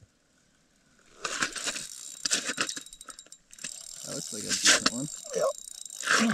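Spinning fishing reel rattling and clicking as a hooked lake trout is fought through the ice, starting about a second in, with faint voices near the end.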